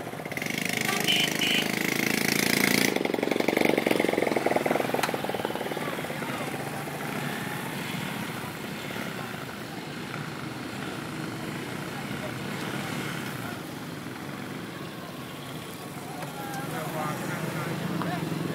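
Road traffic and crowd noise: motorcycle and vehicle engines running among people's voices. The engine noise is loudest in the first few seconds, and voices come through more clearly near the end.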